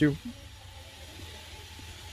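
A spoken word ends right at the start, then a pause of faint, steady background hiss with a low hum underneath; no other distinct sound.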